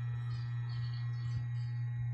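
Electric hair clipper running with a steady low hum while its blade cuts the hair at the back of a neck.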